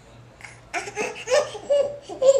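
A toddler laughing in a run of short, high-pitched bursts, starting about half a second in.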